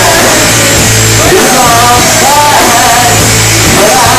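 Live rock band playing loud: electric guitars, bass and a drum kit, with a male singer.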